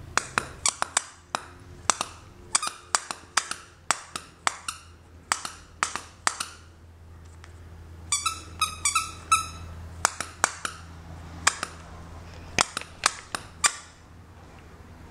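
A squeaker in a plush dog toy squeaking over and over as a small dog chews it, in quick bursts of short, high squeaks, with a run of longer, more tuneful squeaks about eight seconds in. A faint low hum runs underneath.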